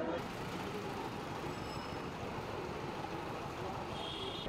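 A motor vehicle running with a steady low hum over street noise.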